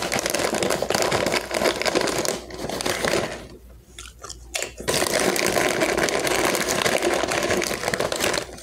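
Ridged potato chips crunched and chewed close to the microphone, in two long spells of crackly crunching with a short pause between. The foil chip bag crinkles as a hand reaches into it.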